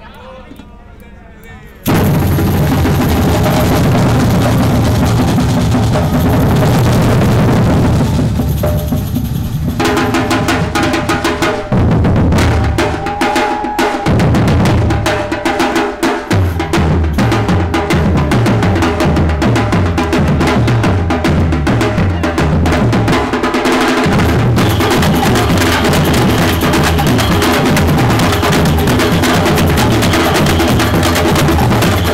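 Batucada-style street drum group playing: bass drums and snare drums in a driving, repeating rhythm. It starts quietly and comes in at full volume about two seconds in.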